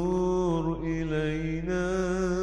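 A solo voice sings an Arabic nasheed, unaccompanied. It holds long, wavering notes that slide in pitch, with a brief dip in the middle.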